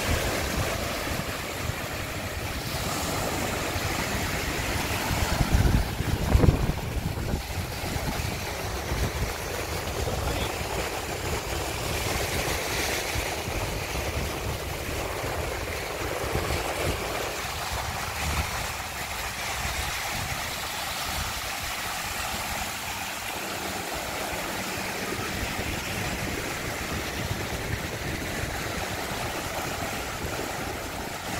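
Small sea waves breaking and washing up over a sandy beach in a steady, swelling wash. About six seconds in, a brief low rumble of wind buffets the microphone.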